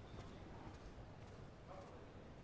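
Near silence: quiet room tone with a few faint taps.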